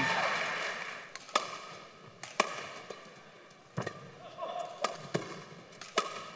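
Badminton rally: a racket striking the shuttlecock back and forth, heard as sharp cracks about once a second, several of them in quick pairs, over a quiet hall murmur.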